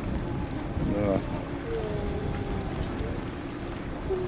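Wind rumbling on the microphone, with a brief indistinct voice about a second in and a drawn-out voice-like tone just after.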